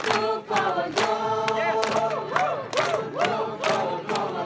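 A group of young voices singing a group song together, with sharp hand claps repeated along with it.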